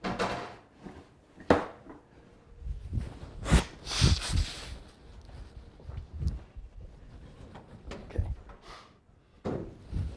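Scattered knocks and thuds with a brief rustle about four seconds in.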